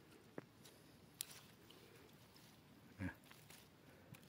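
Near silence, with a few faint clicks and one brief low thump about three seconds in: handling noise as a hand parts tomato leaves and stems around the phone.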